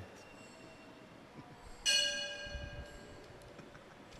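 A single bell-like chord struck once on a keyboard about two seconds in, ringing and slowly fading, over otherwise quiet church room tone.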